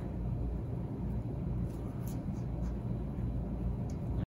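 Steady low rumble of background noise, with a few faint light ticks.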